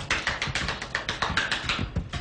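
A chukar partridge scrambling up a steep inclined ramp: a rapid, irregular run of sharp taps, about ten a second.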